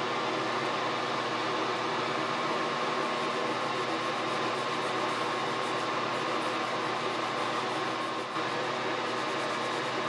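Steady drone of a vent hood's exhaust fan, a hum with a few steady tones in it, with faint scrubbing of a solvent-soaked cotton pad over a copper circuit board.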